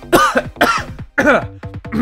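A man's exaggerated laughing and coughing over background music.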